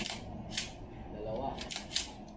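Sharp clicks and clacks from a G&G SMC9 airsoft carbine's polymer and metal parts as it is handled and turned over: one at the start, one about half a second in, and a quick run of three near the end.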